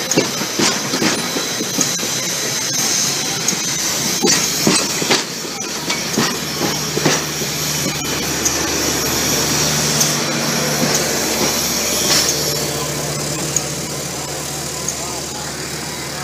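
Passenger railroad cars rolling slowly past at close range, their wheels clicking and knocking over the rail joints, over a high hiss. A low steady hum comes in partway through and fades out a few seconds before the end.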